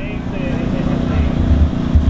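Steady low engine rumble, swelling about halfway through, with faint voices underneath.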